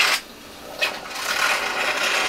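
Syringe on a large-bore tracheostomy needle being drawn back: a rubbing hiss that breaks off just after the start, a click about a second in, then more rubbing. Air coming back into the syringe is the sign that the needle tip is inside the trachea.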